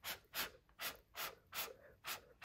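Short, evenly spaced puffs of breath blown through a straw onto wet acrylic paint, about five in two seconds, each a brief rush of air. The blowing spreads the bloom and pulls up the colours from underneath.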